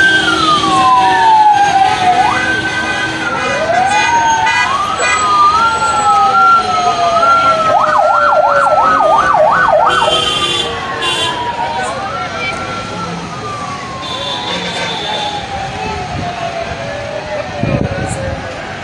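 Several vehicle sirens sounding at once, overlapping wails that sweep up quickly and fall away slowly. A fast yelping warble comes in for about two seconds midway. A sharp thump sounds near the end.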